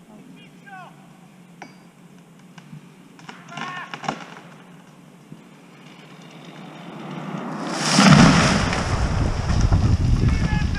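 A felled beech tree going over: a rising rush of its crown through the air, building to a loud crash as it hits the ground about eight seconds in, then a heavy rumble and crackling of branches settling.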